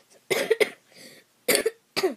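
A boy coughing twice, short harsh coughs about a third of a second in and again about a second and a half in.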